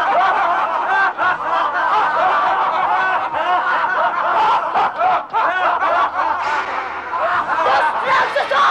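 A group of men laughing loudly together, many voices overlapping in gloating laughter.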